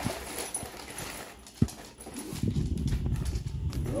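A cardboard shipping box being opened by hand, with its flaps pulled back and paper packing rustled and pulled out. There is one sharp knock about one and a half seconds in, then a run of low thumps and rustling for the last two seconds.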